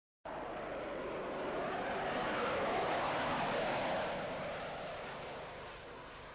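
Jet aircraft flying past, its engine noise swelling to a peak about three seconds in and then fading away.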